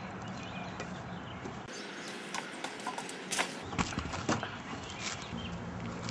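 A few scattered light knocks and footsteps on roof shingles as wooden doors are handled, over a steady low hum.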